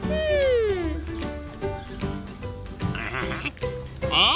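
Cartoon background music with a wordless falling vocal glide, like a drawn-out "ooh", from a cartoon character in the first second, and a short warbling sound about three seconds in.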